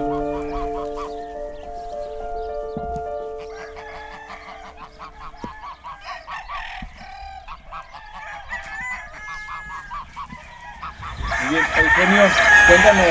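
Many gamecocks crowing and clucking at once, their calls overlapping, over music that stops about five seconds in.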